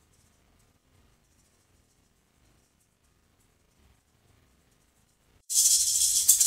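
Near silence while shaken maracas are gated out by the conference system's Acoustic Fence noise blocking, the sign that the player is outside the fenced pickup zone. About five and a half seconds in, the rattle of the maracas cuts back in suddenly and loudly.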